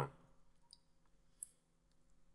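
Two small computer mouse clicks over near-silent room tone, the second sharper and louder, about three quarters of the way in.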